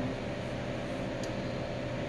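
Steady low hum and hiss of workshop background noise, with one faint tick a little past a second in.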